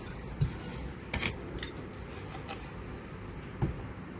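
Handling noise: a few scattered light knocks and clicks as a weathered wooden board is picked up and moved over a plastic planter, over a steady low background rumble.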